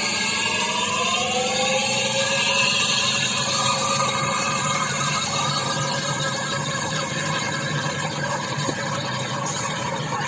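Air compressor running steadily to drive an impeller air-lift pump, its pitch rising over the first few seconds as it comes up to speed and then holding steady.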